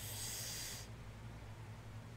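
A person's short breathy hiss, about a second long, at the start, then only a faint low steady hum.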